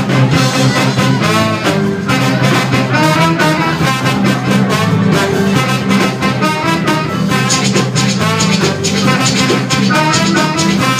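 A live band's horn section of trumpet, trombone and saxophone plays a tune over a steady drum beat.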